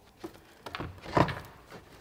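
A few short knocks and scrapes as a panel air filter is lifted out of a plastic airbox, the loudest knock about a second in.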